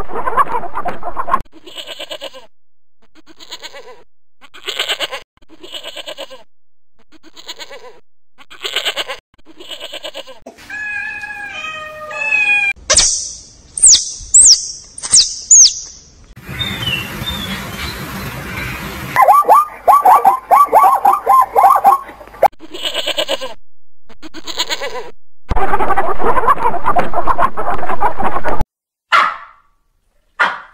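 A string of different animal calls cut one after another: a hen clucking for the first second and a half, then a series of short repeated calls, high chirps, a fast run of calls and loud noisy stretches, with short calls near the end.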